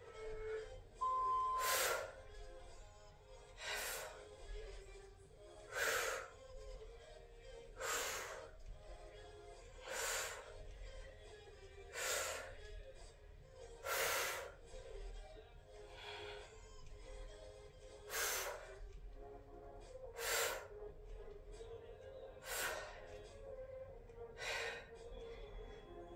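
A woman's sharp exhalations, one about every two seconds, the effort breaths of a steady set of kettlebell reps, over faint background music.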